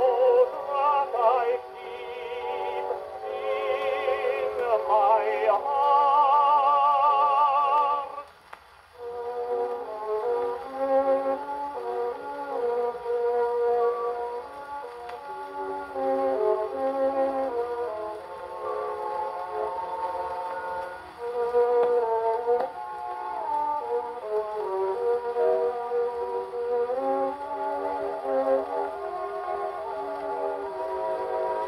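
A Gennett 78 rpm shellac record played acoustically on an HMV 102 portable wind-up gramophone. A tenor sings with strong vibrato until about eight seconds in; after a brief pause the orchestral accompaniment plays on alone, with a narrow, boxy, horn-like tone.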